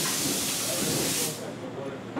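A burst of loud, steady hissing from a pressurized spray, which stops about a second and a half in.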